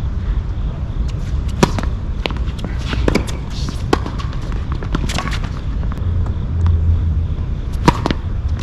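Tennis balls struck by racquets and bouncing on a hard court during a doubles rally: a series of sharp pops about a second apart. A loud hit comes near the end.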